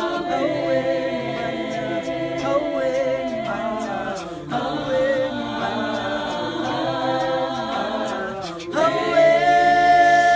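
A choir singing a cappella in harmony, several voices together. The singing breaks off briefly about halfway and again just before the end, then comes back louder on a long held note.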